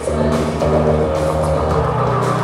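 Live rock band playing: electric guitars and bass holding sustained chords over drums.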